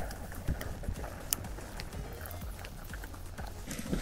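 Irregular small crackles and knocks from a wood fire burning under a cast-iron kazan, with dumplings splashing into the hot water.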